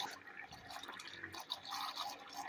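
Faint churning and light bubbling of water in a plastic tub, stirred into small whirlpools by little motor-driven vortex generators.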